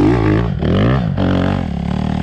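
Dirt bike engine revving hard under load as a green Kawasaki climbs a steep dirt hill, its pitch rising and falling with the throttle and easing off near the end.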